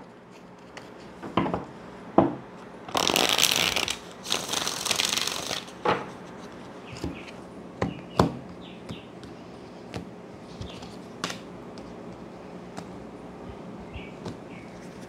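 A tarot deck being shuffled by hand: two dense bursts of shuffling about three and four and a half seconds in, with scattered light clicks and taps of the cards before and after.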